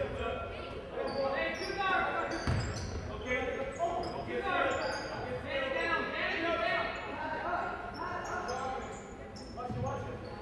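Basketball game in a large gym: crowd and player voices echoing, sneakers squeaking on the hardwood floor, and the ball bouncing as it is dribbled, with low thumps about two and a half seconds in and near the end.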